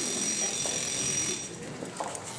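Audience laughter and applause dying away in a large hall. A thin, steady high tone runs under it and stops about one and a half seconds in.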